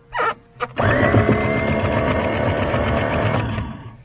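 Freshly rebuilt electric anchor windlass on a Catalina 42, its motor and gearbox running unloaded with no chain on it. It spins up with a rising whine, runs steadily for about three seconds, then winds down; it is working.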